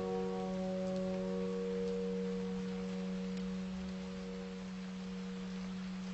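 A single piano chord ringing out slowly in gentle instrumental music. Its higher notes die away within the first two seconds, leaving a steady low tone that fades gradually.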